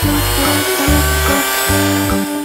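Electric hand mixer running steadily, its beaters whisking bubble powder and water into foam, under background music with a repeating bass line.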